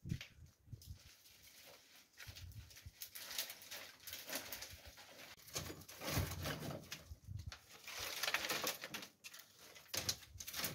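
Dry twigs and brushwood rustling and crackling as they are handled, gathered up and laid on a stove top in small bundles, with irregular snaps and scrapes of thin branches.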